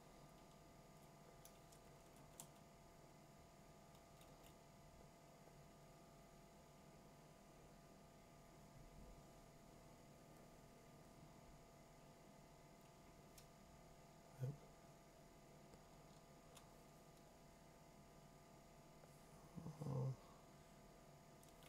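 Near silence: a faint steady room hum with a few soft computer keyboard key clicks. There is a brief low murmur about two-thirds of the way through and another at the very end.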